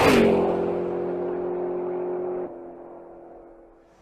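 Intro sound effect for the logo animation: a whoosh swells to a peak at the start, then a falling tone settles into a steady hum. The hum drops in level about two and a half seconds in and fades away.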